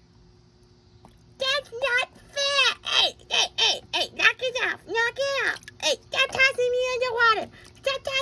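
A high-pitched, child-like voice in quick bursts with sliding pitch, starting about a second and a half in after a near-quiet opening.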